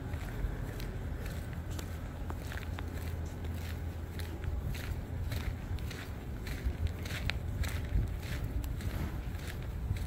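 Footsteps of a person walking on sand-covered pavement, about two steps a second, over a steady low rumble.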